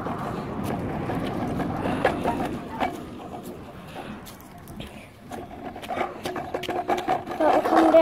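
Scooter rolling fast over a dirt and gravel path, its wheels rumbling with frequent rattles and clicks from the bumpy ground. A steady hum joins in after about five seconds.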